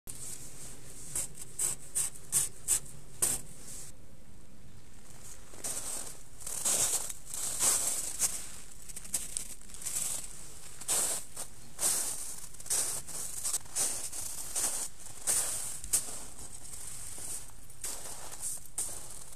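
Footsteps crunching through snow, irregular steps with a pause of about a second and a half around four seconds in.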